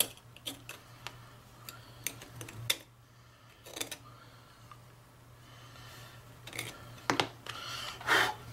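A needle file scraping and clicking in a drilled hole in a thin aluminium plate, enlarging the hole: a scattering of short strokes with pauses between them, over a faint steady hum.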